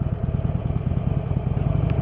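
Harley-Davidson Forty-Eight's air-cooled 1200 cc V-twin running steadily at cruising speed, a fast, even throb of exhaust pulses under road and wind noise.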